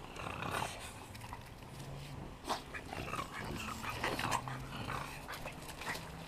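French bulldogs growling and grunting in play as they run, over irregular crunching of footsteps on wood-chip mulch.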